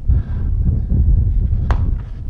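Low, uneven rumble of wind buffeting the microphone, with a single sharp click near the end.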